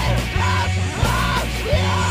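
Screamo band recording: a yelled vocal line over bass, guitars and drums, with regular drum hits through it.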